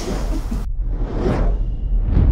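Sound-effect whooshes of an animated logo intro over a steady deep rumble: a rush of noise cuts off suddenly about two-thirds of a second in, then a second whoosh swells and fades away.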